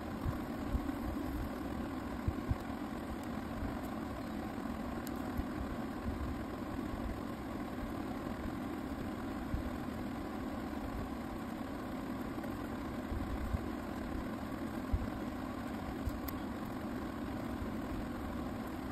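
A steady low hum runs throughout, with a few faint short clicks scattered through it.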